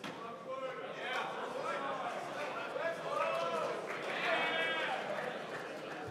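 Indistinct voices in a large hall: several people calling out and talking at once, with some drawn-out calls, all well away from the microphone.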